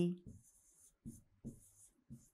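Handwriting with a pen: a series of short, separate scratching strokes, several in two seconds, as words are written out.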